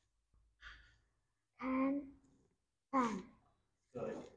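A soft breath about half a second in, then two short spoken words in a child's voice, the second falling in pitch.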